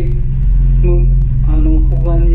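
A person speaking Japanese over a steady low drone.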